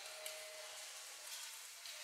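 Faint room tone: a steady low hiss with no distinct sound event.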